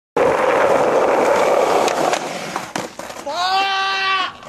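Skateboard wheels rolling on concrete, then sharp clacks of the board. Near the end a person shouts one long, held yell as the skater bails on the stairs.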